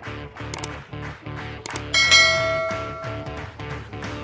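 Subscribe-button animation sound effects over background music: a quick double click about half a second in and another just before two seconds, then a bell chime, the loudest sound, that rings and fades over about a second and a half.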